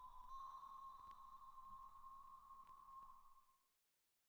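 Near silence: a faint, steady high tone that fades out about three and a half seconds in, leaving dead silence.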